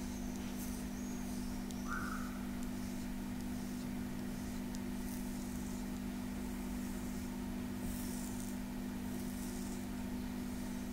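A flat stone gua sha scraper gliding over bare skin of the back, giving soft, faint swishes a few seconds apart, over a steady low electrical hum.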